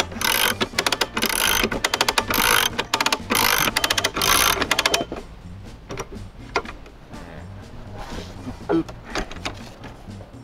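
Hand-crank winch ratcheting as it is cranked to raise a telescoping post: bursts of rapid pawl clicks about once a second for the first five seconds, then fainter, sparser clicks.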